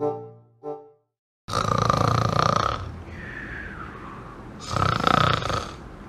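Black Havanese dog snoring in its sleep: two loud snores about three seconds apart with a quieter breath between, starting about a second and a half in.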